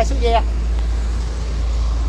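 A steady low engine rumble, as of a small engine running at idle, with one short spoken word at the very start.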